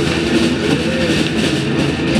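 Rock band playing live and loud: distorted electric guitars and bass over drums, a dense wall of sound with sustained guitar notes.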